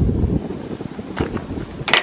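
Wind buffeting the microphone in uneven gusts, a low rumbling noise. A single sharp click sounds just before the end.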